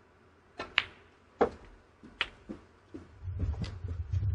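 Snooker balls clicking: the cue tip strikes the cue ball and the cue ball clicks into an object ball under a second in, followed by several more sharp clicks and knocks of balls striking each other and the cushion. A low rumble comes in during the last second.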